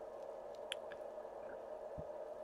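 Quiet room with a steady low hum, a faint sharp click a little under a second in and a short soft knock at the end, as plastic water bottles are handled.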